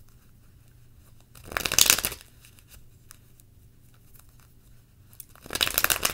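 A deck of tarot cards being shuffled in two short bursts of rapid card flicking, one about a second and a half in and one near the end.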